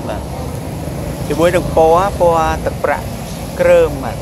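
A person speaking in short phrases over a steady low background rumble.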